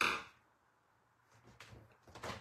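Cardstock being handled on a paper trimmer: a short scraping swish right at the start, then faint rustles of the card being shifted on the trimmer near the end.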